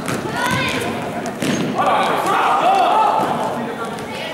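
Basketball game in an echoing sports hall: voices calling and shouting on and around the court, with a few thuds of the ball bouncing on the floor.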